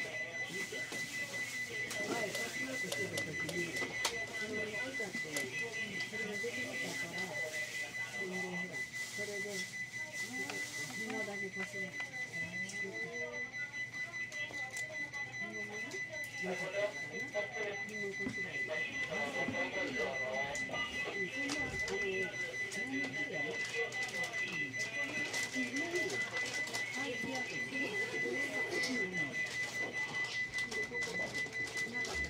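Indistinct murmur of passengers' voices in a train standing at a station, with no running or rail noise, over a steady high-pitched tone and a few faint clicks.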